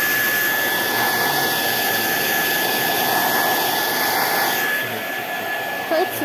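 Gaabor GHD N700A hair dryer running steadily, its airflow noise carrying a thin, steady high whine. About four and a half seconds in, the sound dulls and drops slightly.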